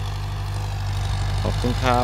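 Ford tractor engine running steadily under load while pulling a seven-disc plough, a low even drone. A man's voice comes in near the end.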